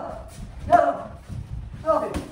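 Two short vocal shouts about a second apart, amid soft thuds of boxing gloves landing on pads and body protectors.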